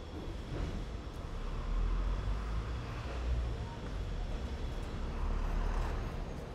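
Street traffic: a motor vehicle driving past on the road, its engine and tyre noise swelling about two seconds in and again near the end.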